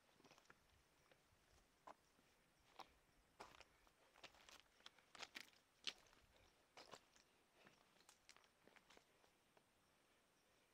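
Faint, irregular footsteps on loose stones and gravel: scattered crunches and clicks of rock underfoot, coming thickest in the middle few seconds.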